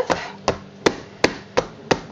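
A soap mould full of freshly poured soap batter is banged down repeatedly on a work surface to settle the batter. It makes a run of sharp knocks, about three a second.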